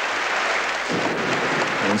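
Audience applauding steadily after a successful weightlifting lift.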